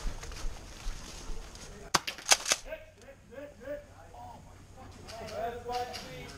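Airsoft guns firing: a quick run of sharp pops about two seconds in, followed by distant voices of players calling out.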